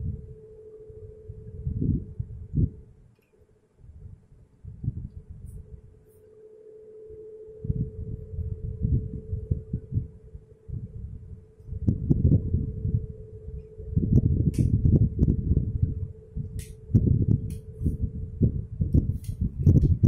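Low thumps, knocks and rubbing from a DSLR being handled and fixed onto a tripod's head. They are sparse at first and grow busier about twelve seconds in, over a steady low hum.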